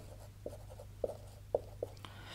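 Marker pen writing on a whiteboard: a few short, faint strokes over a low steady hum.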